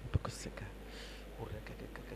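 A congregation praying aloud all at once: a low jumble of many voices, some whispered with sharp hisses. A short sharp knock just after the start.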